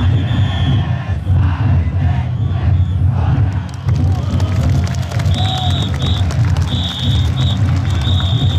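Crowd of taikodai (drum float) bearers and onlookers shouting and cheering over a heavy low drumming. In the second half, a high whistle sounds in three or four short blasts, the signal used to direct the bearers.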